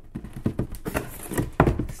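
Cardboard rubbing, scraping and knocking as a cut cardboard triangle is pushed into a cardboard box and pulled back out, with a handful of dull thumps, the loudest a little past halfway. The panel is still slightly too big and catches on the sides.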